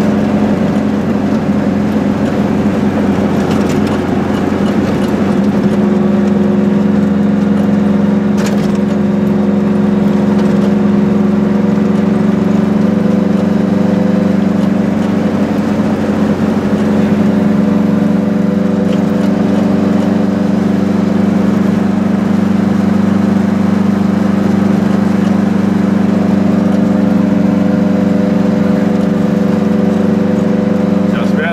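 Goggomobil's small air-cooled two-stroke twin engine running steadily as the car cruises along, heard loud from inside the tiny cabin, with a brief click about eight seconds in.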